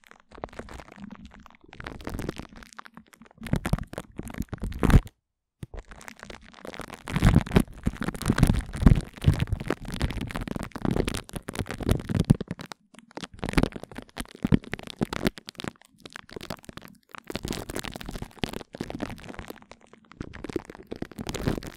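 Glue stick rubbed and dabbed on cling film stretched over a microphone grille, close up: sticky crackling in uneven strokes, with a brief complete dropout about five seconds in.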